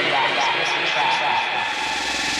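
A radio station jingle's electronic music and effects: a dense, steady wash of synthesized sound with a few short chirping glides in the first second.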